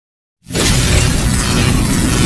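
Logo-intro sound effect: silence, then about half a second in a sudden loud crash of noise that carries on as a dense, full rush with a deep rumble underneath.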